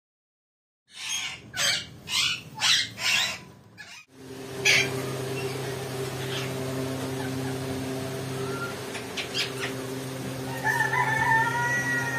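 Caged parakeets squawking: about five loud, harsh calls in quick succession. Then, over a steady low hum, one more sharp squawk follows, and warbling whistled chatter comes near the end.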